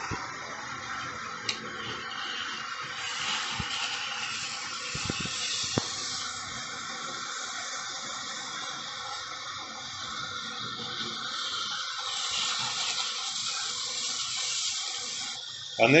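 Hornby OO gauge model train running round the layout out of sight: a steady whirr of its motor and wheels on the rails that swells twice as it comes nearer, with a few light clicks.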